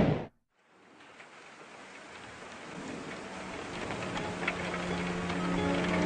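The tail of a loud blast-like sound effect cuts off sharply. After a moment of silence a rain-like hiss with scattered patters fades in and slowly grows, and the held notes of a music intro come in over it near the end.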